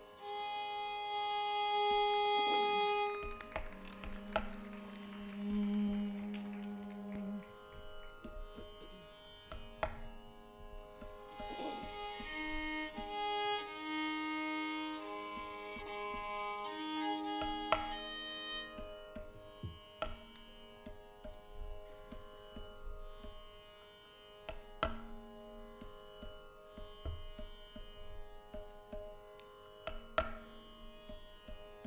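Carnatic classical music: a steady drone under a melody in long held notes, with scattered drum strokes from a barrel drum.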